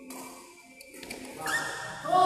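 A few sharp taps of badminton rackets striking the shuttlecock during a rally, over faint background music.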